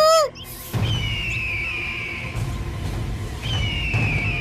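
A child's sung line breaks off at the very start. Then a bird of prey's screech, a long high falling cry, sounds twice, about a second in and again near the end, over a low rumbling background.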